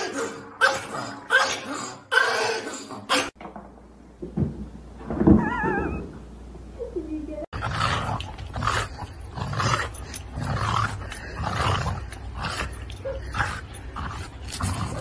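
A Pomeranian barking in a quick run of about five short, snarling barks in the first three seconds. After a cut comes a drawn-out wavering call around the middle, then a string of shorter irregular dog or voice sounds.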